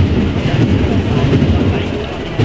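Drums of a marching procession band beating a steady rhythm.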